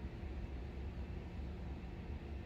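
Steady low hum with a faint hiss, with no distinct events.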